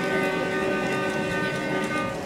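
Solo Persian long-necked lute, a plucked string instrument, holding one long steady note that dies away near the end.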